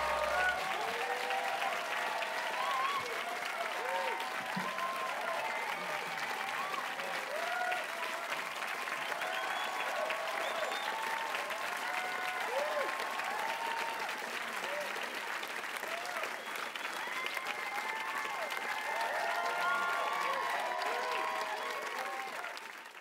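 Studio audience applauding steadily, with scattered cheers and whoops from the crowd over the clapping.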